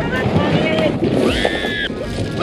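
Plastic kayak hull scraping over a pebble beach as it is pushed into the water, with a woman's short high-pitched cry in the second half.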